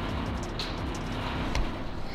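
Loud, steady mechanical vibration and hum from running shop machinery.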